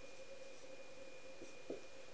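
Faint strokes of a marker writing on a whiteboard, over a steady faint hum.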